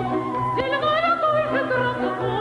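Operatic soprano singing an operetta line with strong vibrato over an orchestra; about half a second in she starts a new phrase that climbs to a higher held note.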